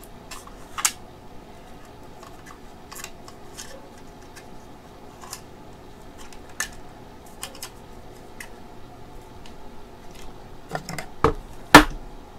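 Scattered plastic clicks and taps as the white plastic casing of a nebulizer compressor is handled and fitted, with two sharp knocks near the end, the second the loudest.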